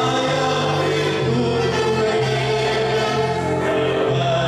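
Gospel song: voices singing over instrumental accompaniment, with sustained bass notes that change about once a second.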